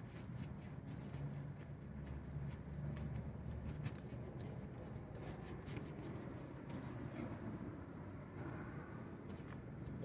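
A towel wet with denatured alcohol wiping and rubbing across a glass door pane. It is faint, with scattered light irregular taps over a low steady hum.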